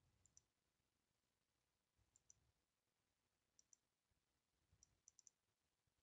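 Near silence broken by faint computer mouse clicks, mostly in quick pairs, about five times.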